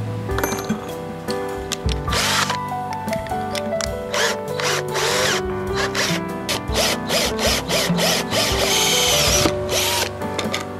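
Swiss Military cordless drill run in several short bursts, drilling holes in a thin board. The longest burst comes near the end, with a wavering motor whine. Background music plays throughout.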